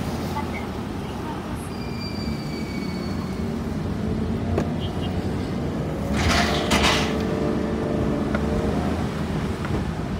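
Car moving slowly, its engine and tyres giving a steady low rumble. About six seconds in, a louder rushing sound with a hum swells for about a second, then eases.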